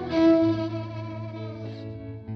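Blues band music in the closing bars of a song: a guitar note with overdrive rings out and fades, and a quieter held chord comes in near the end over a steady low note.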